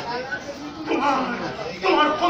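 Speech: a voice delivering lines in a stage play, in short phrases with brief pauses.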